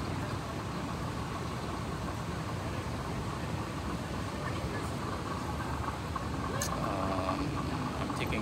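A moving walkway running, giving a steady mechanical hum and rumble. Faint voices of passers-by come in briefly about seven seconds in.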